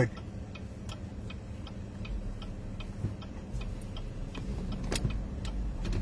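Steady road and engine noise inside a moving car's cabin, with a regular light ticking throughout.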